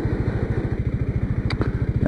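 Motorcycle engine running steadily while riding at low speed, a fast, even pulsing thrum.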